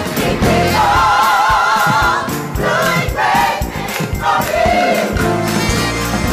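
Gospel choir singing with a live band: drum kit and electric bass under the voices. About a second in, the choir holds a long note with vibrato.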